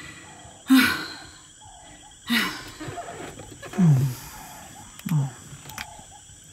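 Sleepy breathing sounds from a lion puppet's voice: four breaths about a second and a half apart, the first two noisy snuffling inhales, the last two low sighs falling in pitch, as of someone settling into sleep.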